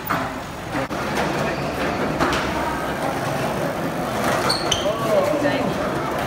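Busy skate park ambience: a steady wash of background voices and rolling wheels on concrete, with a few short knocks and clicks.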